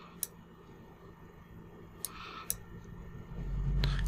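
Three sharp computer mouse clicks, about a quarter second in and twice about two seconds in, over faint hiss; a low rumble rises near the end.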